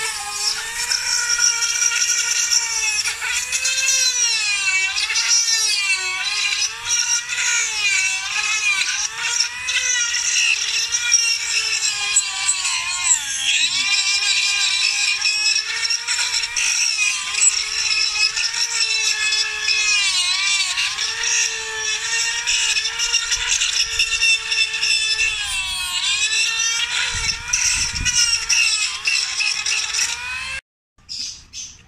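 A handheld rotary tool on a flexible shaft grinding bonsai deadwood. Its motor keeps up a steady high whine whose pitch wavers and sags as the bit bites into the wood, with a deeper dip about halfway through.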